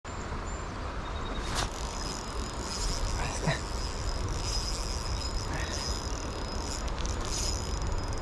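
Steady hiss of rain and flowing river water, with a low rumble of wind on the microphone and one sharp click about one and a half seconds in.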